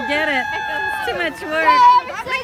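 Excited, high-pitched voices of several children shouting and calling out over one another, some calls long and drawn out.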